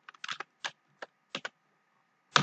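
Typing on a computer keyboard: about six separate keystrokes at an uneven pace, a couple of them in quick pairs.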